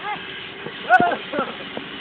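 Short voice exclamations from onlookers, a few brief cries about a second in, over the faint steady hum of a small vehicle's engine.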